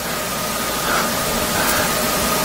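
Steady even hiss with a faint steady high tone underneath, the background noise of the recording in a pause between speech.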